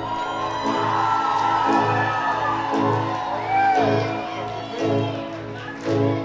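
Live rock band playing a quieter, drumless passage: a low note pulsing about twice a second under sustained electric guitar.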